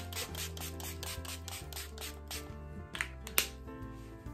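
Hands patting and rubbing face mist toner into the skin: a quick, even run of soft pats, several a second, with two sharper ones near the end. Quiet background music runs underneath.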